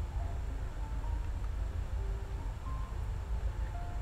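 Faint background music with short, scattered notes over a steady low rumble.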